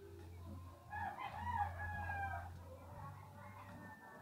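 A rooster crowing once, about a second in, over a steady low hum.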